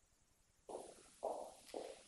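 Footsteps on a wooden parquet floor: three soft, evenly spaced steps about half a second apart, starting a little under a second in.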